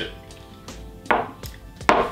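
Two short knocks, about three-quarters of a second apart, of drinking glasses set down on a wooden table, over faint background music.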